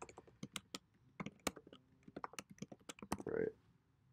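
Typing on a computer keyboard: a quick, uneven run of key clicks that stops about three seconds in.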